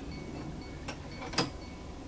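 Two short clicks about half a second apart, the second one sharper, from small hard objects being handled on a tabletop.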